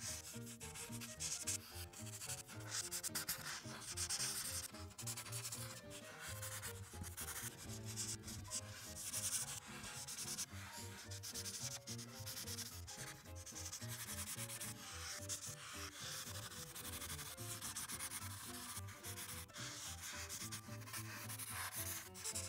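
Felt-tip art marker (Ohuhu) scratching across paper in repeated quick strokes while filling in a large area, with faint background music underneath.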